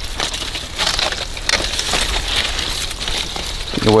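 Yucca flower stalk and stiff leaves crackling, snapping and rustling as the stalk is worked loose and pulled free of the plant. It is a run of small, irregular cracks.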